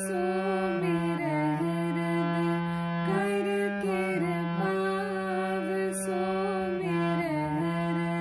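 Harmonium playing a slow devotional melody, the notes changing about once a second over held lower notes.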